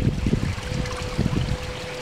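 Outdoor wind buffeting the microphone of a handheld camera as an irregular low rumble, with a thin, steady, faint tone running underneath.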